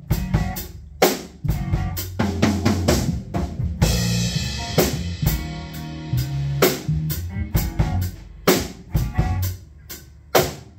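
Live band playing an instrumental passage at a slow tempo: drum kit with kick, snare and cymbals keeping a steady beat under held electric bass notes and electric guitar, with a cymbal crash about four seconds in.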